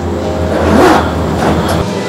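Gondola cable car running, heard from inside the cabin: a steady low hum and rumble that swells about a second in.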